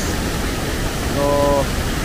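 Waterfall rushing: white water pouring over rock close by, a steady, loud rush. The falls are running high.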